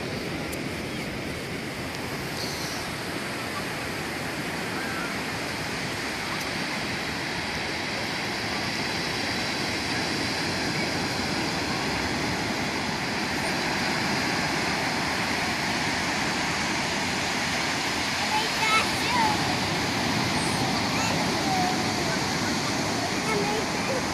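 Ocean surf breaking on a sandy beach: a continuous rushing wash of waves that grows slightly louder over the stretch.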